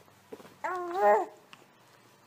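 A young baby cooing: one drawn-out, high-pitched coo of under a second, starting about half a second in.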